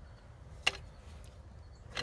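A single sharp plastic click about two-thirds of a second in, from an unplugged engine wiring-harness connector being handled, over a faint steady low rumble.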